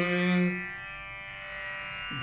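The last held note of a chanted Sanskrit verse fades out about half a second in, leaving a faint, steady instrumental drone under the pause.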